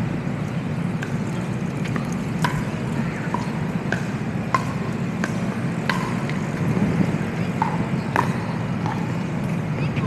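Sharp hollow pops of pickleball paddles striking the plastic ball, irregular and at varying loudness, roughly one or two a second. Under them runs a steady low hum of city traffic.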